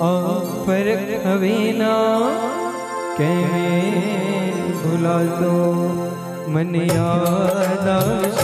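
Devotional hymn music: a melody with wavering, gliding held notes over a steady sustained accompaniment, with a few percussion strikes near the end.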